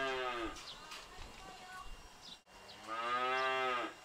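Cattle mooing: two long moos, one at the start and one about three seconds in, each falling in pitch as it ends.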